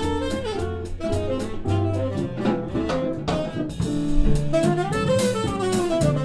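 Live jazz band: a tenor saxophone plays a moving melody over upright double bass and a drum kit with cymbals.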